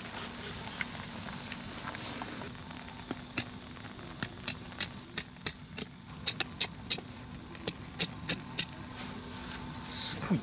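Metal tent stake being hammered into the ground: about sixteen sharp metallic clinks, two or three a second, starting about three seconds in and stopping near the end.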